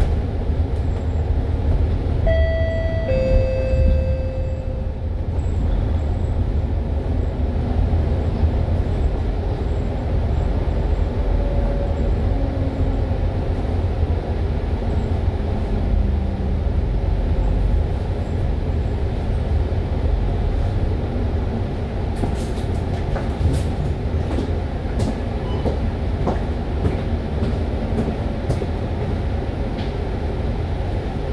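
Cabin sound of a moving MAN A95 double-decker bus: a steady low drone from the diesel engine and driveline, with road rumble. About two seconds in, a two-note chime steps downward, typical of a bus stop-request bell. A few light rattles or ticks come near the end.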